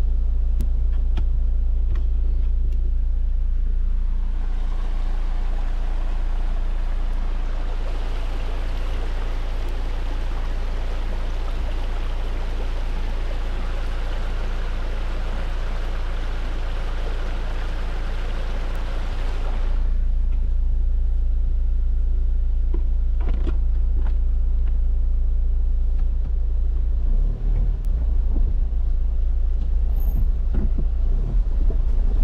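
Low, steady rumble of a four-wheel drive's engine heard inside the cabin. From about four seconds in until near twenty seconds, the even rush of a shallow creek running over rocks comes in, starting and stopping suddenly, and a few knocks follow near the end.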